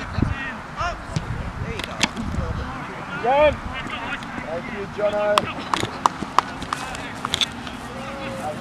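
Distant shouts and calls from rugby players and sideline spectators on an open pitch: several rising-and-falling cries, with a held call about five seconds in, over scattered sharp clicks and low rumbles.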